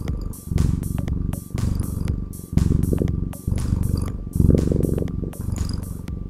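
A domestic cat purring close up. The low purr comes in pulses about once a second.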